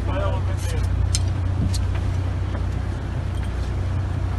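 Boat engine idling with a steady low hum, with several sharp clicks in the first two seconds.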